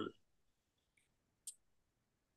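Near silence in a pause between sentences, broken once, about a second and a half in, by a single short faint click.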